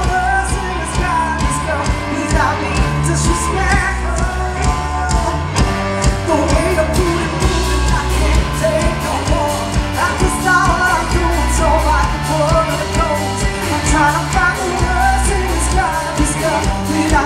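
Live pop-rock band playing: a woman singing lead over electric guitar, bass and a drum kit, with a steady, even beat.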